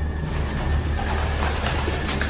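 A low steady rumble with a rushing hiss that swells in shortly after the start: atmospheric sound effects in a themed ghost-train queue.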